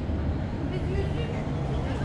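Street ambience: a steady low rumble of a motor vehicle engine, with faint voices in the background.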